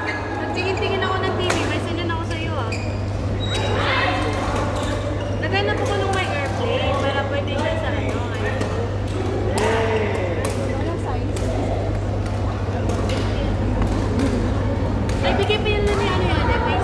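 Indoor badminton hall: shuttlecocks cracking off rackets at irregular moments, sneakers squeaking on the court mats and players' distant voices, over a steady low hum.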